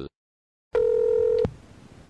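A single steady electronic beep, about three-quarters of a second long, starting about a second in and cut off with a click.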